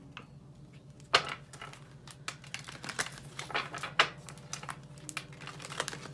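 A deck of tarot cards being shuffled by hand: a sharp card snap about a second in, then a run of light, irregular clicks of the cards.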